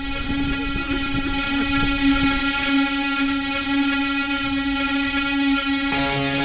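A steady held tone at one unchanging pitch, rich in overtones, with a low rumble beneath it.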